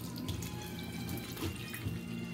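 Kitchen faucet running in a steady stream onto leafy greens in a plastic mesh strainer, splashing into a stainless steel sink as hands rinse the leaves.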